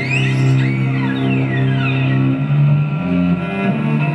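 Live instrumental music: a bowed cello holds a long low note that shifts to a slightly higher note about two and a half seconds in, under a high melody that slides up and down in pitch.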